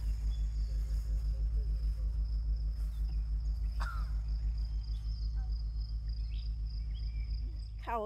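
Crickets chirping steadily over a loud low hum that pulses evenly, with a single short click about four seconds in.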